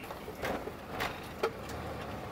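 Camper van driving, heard from inside the cab as a steady road and engine noise, with three light knocks in the first second and a half.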